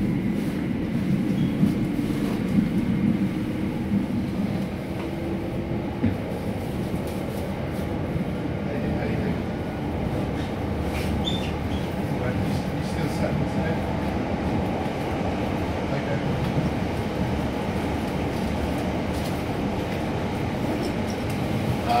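Cabin running noise of a London Overground Class 378 Electrostar electric multiple unit in motion: a steady low rumble of the wheels on the track, with occasional light clicks.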